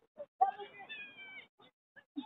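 A high-pitched, drawn-out shout from a person on or beside the pitch, starting about half a second in and lasting about a second, among brief bits of sideline voices.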